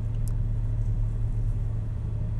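Steady low mechanical rumble with an even hum, like a motor or engine running.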